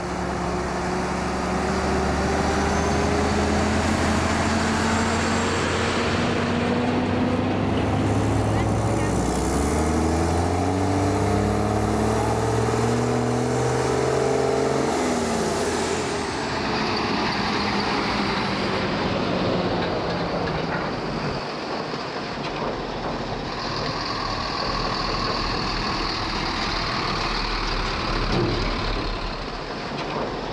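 Heavy dump truck's diesel engine pulling away, climbing in pitch and shifting up twice as it accelerates, then fading out about halfway through. A steady outdoor hiss remains after it.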